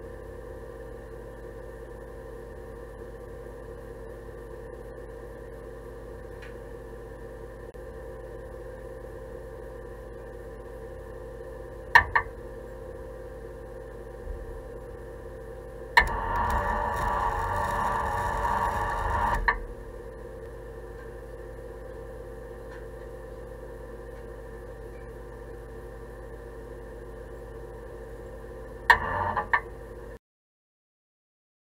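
A welding arc runs for about three and a half seconds near the middle as a bracket is tacked onto the steel bumper. Short sharp crackles come at about a third of the way in and again just before the end. Under it all is a steady electrical hum.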